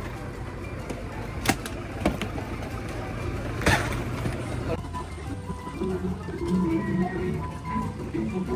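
Knocks and thuds of suitcases being loaded into a bus's luggage hold over a low steady rumble, the loudest knock a little before the middle. Music starts about five seconds in.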